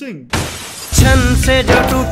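A sudden glass-shattering sound effect lasting about half a second, then about a second in a Bollywood-style song starts loudly with a singing voice.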